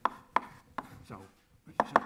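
Chalk striking a blackboard as characters are written: a series of sharp taps, three spaced out and then a quick cluster of three near the end.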